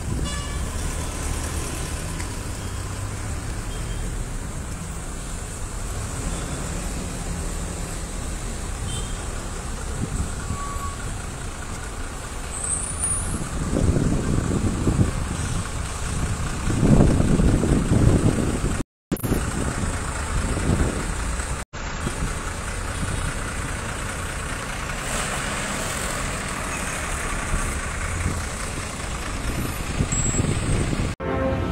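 Traffic noise from a road jammed with cars, motorbikes and trucks: a steady low engine rumble that swells louder for a few seconds in the middle. The sound is broken by two very short gaps after that swell.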